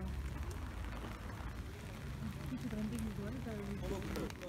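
Voices of people talking in the background, words not made out, over a steady low hum.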